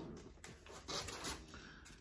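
Faint rustling of vinyl record sleeves being handled, in a few soft bursts.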